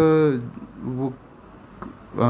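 A man's speech: one syllable drawn out and held level for about half a second, then a single short word, then a pause.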